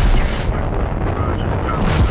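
Rocket launch: a loud, steady rumble of rocket engines at liftoff, swelling brighter near the end.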